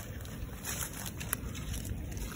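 Low rumble of wind on the microphone, with a couple of faint clicks from the camera being handled.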